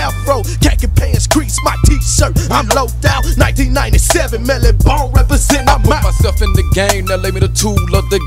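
Hip-hop track in the G-funk style: a deep, sustained bass line and a steady drum beat under a rapped vocal.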